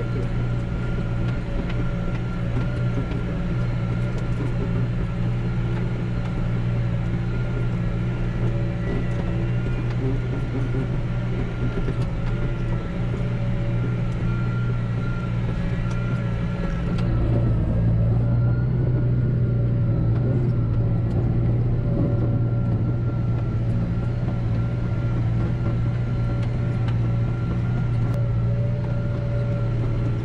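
McCormick MC 130 tractor engine running steadily under load while pulling a disc harrow, held at a fixed speed by the hand throttle set to about 1700 rpm, heard from inside the cab. About halfway through the sound turns a little louder and duller.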